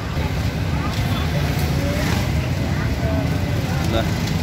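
Street traffic: motorcycle and other vehicle engines running in a steady low rumble, with faint voices in the background.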